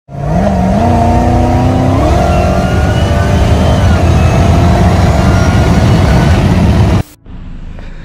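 Twin-turbo 397 V8 in a Dodge Charger at full throttle, heard from inside the cabin as the car pulls hard from about 70 to over 100 mph. The engine note climbs in pitch over the first two seconds, then holds high and steady, and cuts off suddenly about seven seconds in.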